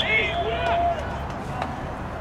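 Shouted voices from a football field in the first second, then steady low background noise with a few faint clicks.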